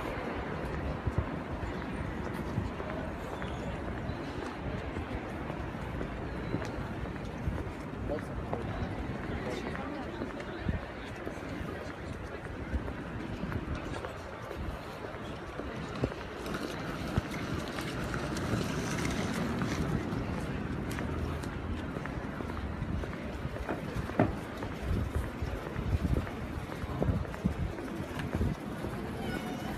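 Street ambience picked up by a phone carried while walking: indistinct voices of people nearby over a low wind rumble on the microphone, with traffic in the background.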